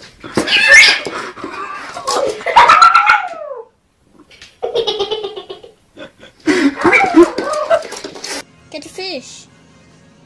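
A kitten meowing and crying out in three or four bursts, with a person's voice mixed in.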